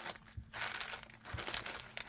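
A zip-top plastic bag of paper craft flowers crinkling as it is handled and turned over in the hands, in irregular rustles.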